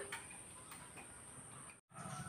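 Quiet background with a few faint ticks, broken by a moment of dead silence just before the end.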